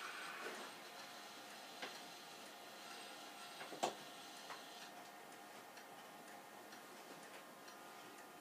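Edison Home B phonograph playing the blank end of a wax cylinder through an exhibition horn: a faint steady surface hiss with light ticking. A sharp click comes just before four seconds in as the machine is handled, with a few smaller clicks around it.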